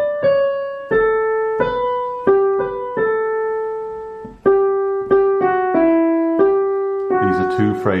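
Digital piano playing a slow right-hand melody one note at a time, each note struck and left to fade. It falls into two phrases with a short break about four and a half seconds in.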